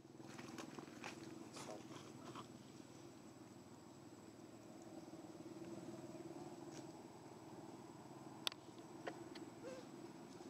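Faint steady low hum of background ambience, with scattered small clicks and rustles and one sharper click about eight and a half seconds in.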